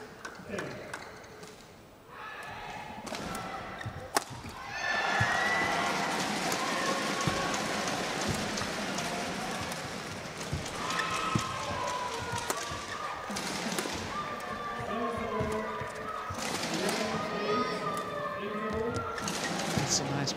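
Badminton rally: sharp racket-on-shuttlecock hits and thuds of players' feet on the court, the loudest hit just after four seconds. From about five seconds in, many voices shout and cheer over the play.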